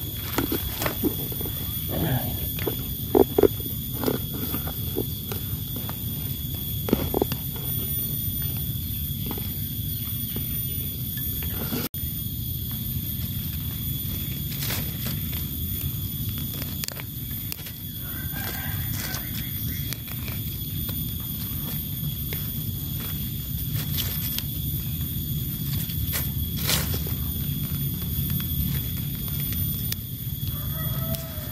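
Footsteps crunching and twigs snapping on dry leaf litter over the first several seconds, then lighter rustling as hands work around a wild mushroom in the litter. Beneath it all runs a steady low rumble and a constant high-pitched whine.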